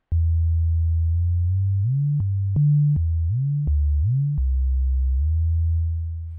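Sine-wave bass from a soundfont in Reason's NN-XT sampler, set monophonic with portamento, playing a low bass line. The pitch slides up to a higher note and back down several times, with faint clicks at the note changes.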